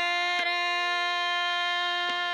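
A woman singing one long held note in Indian classical style over a tanpura drone, with a single drum stroke about half a second in.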